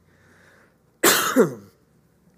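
A man's single cough about a second in: one short harsh burst whose voiced tail falls in pitch, after a faint intake of breath.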